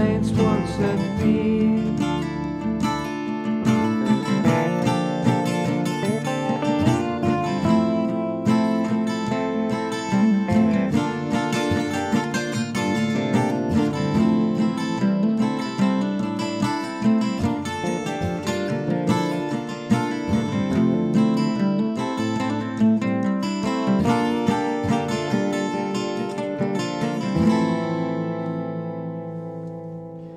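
Acoustic blues instrumental break on guitars: an archtop guitar is picked over further guitar parts with a bass line, with no singing. Near the end the playing thins out and a last chord rings and fades.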